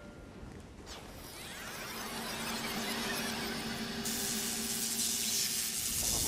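Electric crackle and zap sound effect for a lightning-style transition. A sweeping, buzzing whine with a steady hum underneath builds from about a second in, then a loud hissing crackle takes over for the last two seconds.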